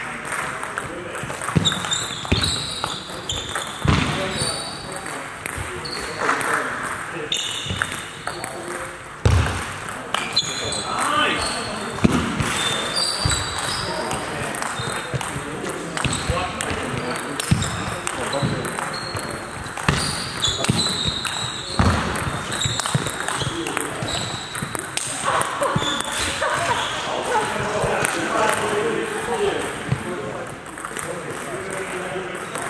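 Table tennis ball clicking off bats and table in rallies, with hall reverberation, over a steady murmur of voices in the room.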